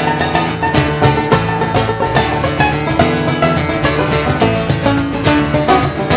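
Live string band playing an instrumental jam: banjo picking over acoustic guitar and electric bass, with a steady, busy rhythm.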